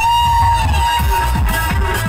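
Loud amplified live stage music with a fast electronic dance beat; a melody line slides up into one long held note that fades after about a second and a half.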